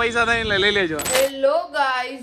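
A man talking and laughing, cut about a second in by a short, bright metallic ching like a coin or cash-register chime.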